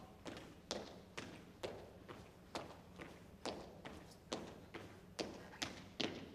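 Soldiers marching in step on a hard floor, their boot heels striking together a little more than twice a second. Each strike has a short trailing echo.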